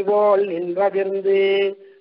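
A man chanting on a nearly level pitch, drawing one syllable out into a long held note that stops just before the end.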